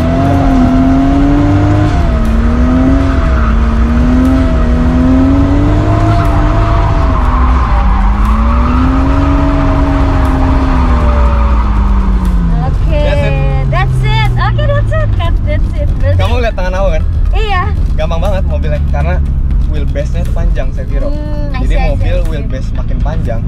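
Nissan Cefiro drift car's straight-six engine revving hard and held high through a drift, its pitch wavering as the throttle is worked, with tyres squealing. About ten seconds in the revs drop away, and after about thirteen seconds voices take over.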